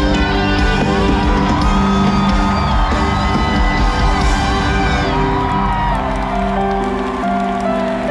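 Loud live concert music over a stadium sound system, with a large crowd whooping and cheering along.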